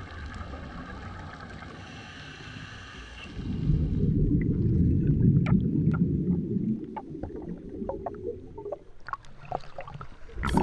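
Scuba regulator exhaust bubbles heard underwater through a camera housing: a quieter stretch with a faint steady whine, then from about three seconds in a loud, low, muffled burbling rush of exhaled bubbles with scattered clicks, thinning out near the end.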